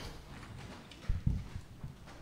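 A few dull, low thumps: two close together about a second in and a softer one near the end, over faint room noise.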